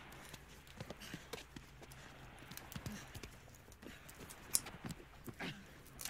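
Fingers peeling a tangerine close to the microphone: faint, irregular crackles, clicks and soft tearing of the rind.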